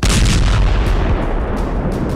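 A sudden loud blast followed by a deep rumbling roar that carries on for about two seconds and slowly fades.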